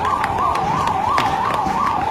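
Ambulance siren sounding a fast up-and-down yelp, about three sweeps a second, steady in level.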